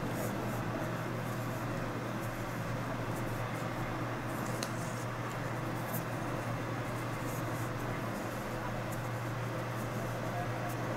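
Steady low room hum with a few faint, soft ticks from a crochet hook and yarn being worked.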